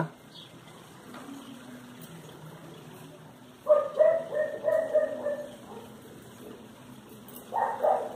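An animal's high-pitched calls: a run of short calls lasting about two seconds starting a little past the middle, and a brief one near the end.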